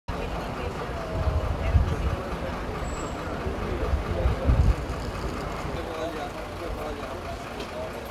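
Street ambience: a low traffic rumble that swells twice, around one and a half seconds in and again around four and a half seconds, with faint, indistinct voices in the background.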